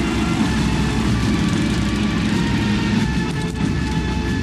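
Gasoline walk-behind lawn mower engine running steadily.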